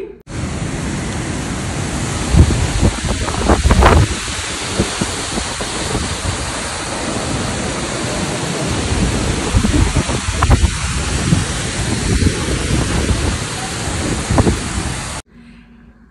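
Heavy rain pouring down in a dense steady hiss, with low rumbles swelling about two to four seconds in and again around ten to twelve seconds in. It cuts in and stops abruptly.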